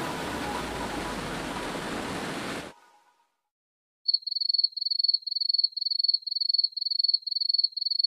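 Rushing water of a small waterfall for the first two and a half seconds, then a sudden cut to silence. About four seconds in, a rapid high-pitched electronic beeping starts, about three beeps a second, and runs on.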